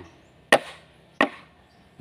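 Two sharp chops of a blade into a bamboo pole, about two-thirds of a second apart, as the bamboo is split lengthwise.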